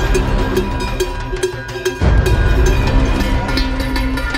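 Cinematic background music: sustained tones over a repeating pulse, with a deep low hit about halfway through that makes it louder.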